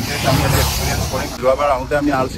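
A road vehicle passing close by, a rush of tyre and air noise with a low rumble that fades about a second and a half in, followed by a man's voice.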